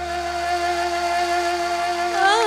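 A woman singing, holding one long steady note, with the low accompaniment dropped out beneath it.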